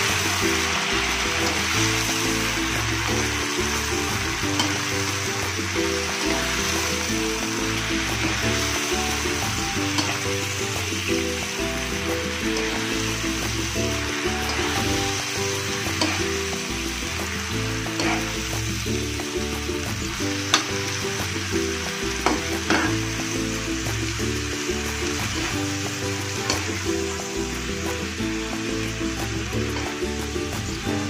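Water spinach stir-frying in a wok: steady sizzling while a metal spatula turns the greens, with a few sharp clicks of the spatula against the pan in the middle stretch. Background music plays underneath.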